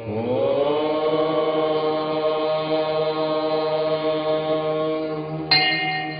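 A single long chanted tone over a steady low drone. It scoops up in pitch at the start, then holds steady. About five and a half seconds in, it turns brighter and then quieter.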